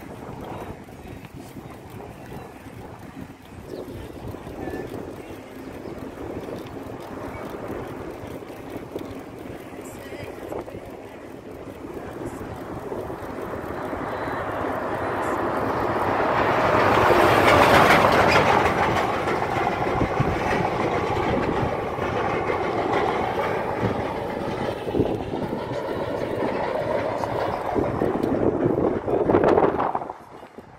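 A heavy truck approaching and passing on the road, its engine and tyre noise building up to a loud peak about halfway through, with traffic noise staying fairly loud after it.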